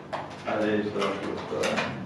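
A man's voice making short, low murmured sounds without clear words.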